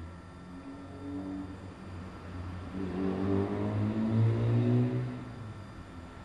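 A motor engine running and revving up, its pitch rising as it grows louder, loudest a little past the middle, then dying away.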